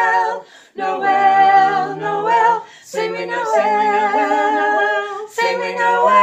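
Women's vocal quartet singing unaccompanied in close four-part harmony: three sung phrases with short breaths between them, and a new held chord starting near the end.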